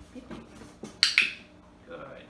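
A dog-training clicker clicking twice in quick succession about a second in, marking the puppy's move onto the step. Softer taps and shuffles of the puppy's paws on a cardboard box come before it.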